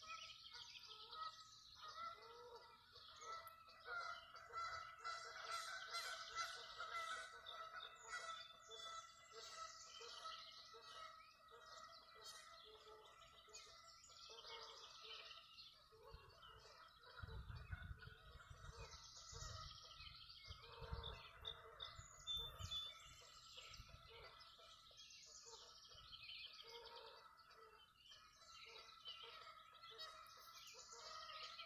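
Many birds calling and chirping together, a dawn chorus, with a low rumble for several seconds in the middle.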